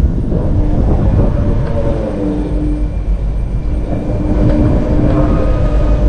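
Giant pendulum ride in motion: a loud, continuous low rumble of air rushing past the microphone and the ride's machinery, with a steady hum that drops out and comes back as the arm swings.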